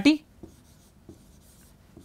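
Chalk writing on a green chalkboard: faint scratching strokes and light taps as a formula is written out.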